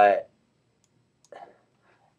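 A single faint computer mouse click about a second and a half in, selecting a menu item, after a trailing spoken "uh".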